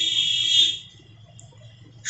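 A steady high-pitched electronic tone, alarm- or buzzer-like, holds for the first second or less, then fades out. A faint thin whine and low room noise remain after it.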